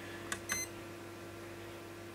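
A light click and then a short electronic beep from a digital watt meter as one of its buttons is pressed, about half a second in, over a faint steady hum.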